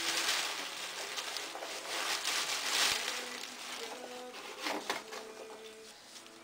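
Plastic bubble wrap rustling and crinkling as it is handled and pulled out of a cardboard box, busiest in the first three seconds and thinning out toward the end.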